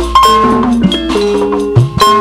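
Sundanese gamelan ensemble playing. Metallophones ring out a stepping melody, and twice a kendang hand drum gives a stroke that slides down in pitch.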